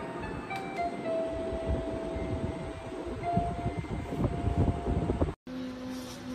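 Electronic crib mobile playing a slow chiming lullaby, one note at a time, over low rustling. It cuts off about five seconds in, followed by a steady low hum.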